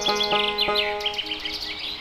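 Plucked-string background music dying away while a bird chirps in quick, high, downward-sliding notes. The chirping stops about a second in.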